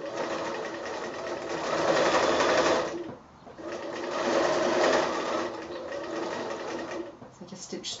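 Domestic electric sewing machine stitching a straight seam through layered fabric, the needle running at a fast, even rate over a steady motor hum. It stops briefly about three seconds in, runs again, and slows near the end.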